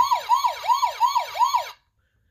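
Electronic toy siren from a sound book's button module: a tinny, repeating falling wail, about three falls a second, that cuts off abruptly near the end.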